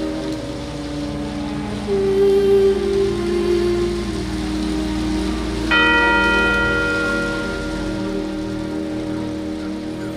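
A church bell struck once about six seconds in and left to ring out, over held musical notes that change pitch a couple of times, with steady rain falling on wet ground.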